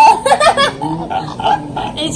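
Voices of a small group of people laughing and calling out, loudest in the first half-second, then quieter.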